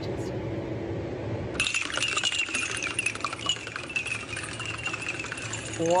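Shot glasses filled with coloured liquid toppling into one another in a domino chain, a rapid, continuous glassy clinking that starts suddenly about a second and a half in. Before that, only a low steady hum.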